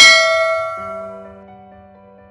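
A bright bell chime struck once, ringing out and fading over about a second and a half: the notification-bell sound effect of a subscribe animation, over soft background music.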